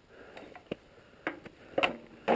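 Three short clicks and knocks, the last and loudest near the end, as a magnetic item is handled and set back onto a motorcycle's steel fuel tank, with faint rustling between. No engine is heard.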